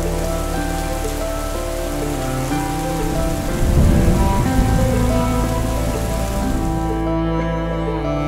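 A steady rain-like hiss that starts suddenly and stops about a second before the end, with a low rumble around the middle, over background music.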